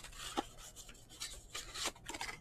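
Cardboard trading-card box being handled and its flap pried open: cardboard rubbing and scraping against cardboard and hands, with a light tick less than half a second in and a longer scrape near the end.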